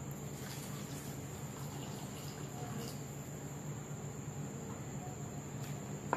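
Milk poured from a mug into a bowl of crushed biscuits, a faint, steady trickle over a low, steady room hum.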